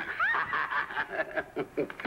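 Short, choppy chuckling laughter following a joke.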